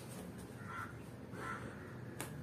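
Faint bird calls: two short calls less than a second apart, over quiet room tone.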